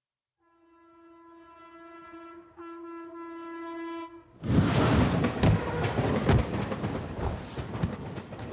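A single steady horn-like tone swells in loudness for about four seconds. It then cuts to a loud, dense rushing clatter with many sharp knocks.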